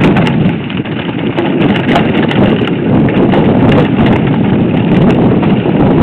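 Mountain bike rattling hard over a rough, rocky singletrack: tyres on loose stones and the bike's parts knocking in a dense, irregular clatter.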